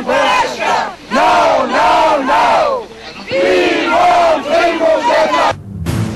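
A crowd of demonstrators shouting slogans together, in loud phrases of a second or two with short breaks between them. Near the end the shouting cuts off and a brief low rumble is left.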